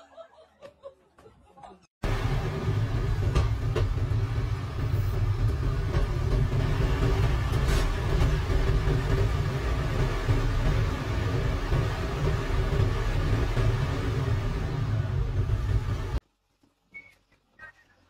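Steady low rumble of heavy diesel machinery, an excavator and a dump truck running, starting about two seconds in and cutting off suddenly near the end.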